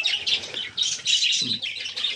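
A flock of caged budgerigars chirping and chattering together: many short, high chirps overlapping without a break.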